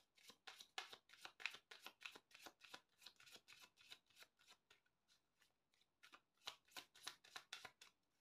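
Tarot deck shuffled by hand: a quiet, quick run of soft card clicks, about four a second, with a lull in the middle before the shuffling picks up again.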